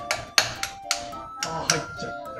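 Hand tools tapping and clinking on the metal of the engine's flywheel with the transmission removed: a handful of sharp, irregular taps, over background music.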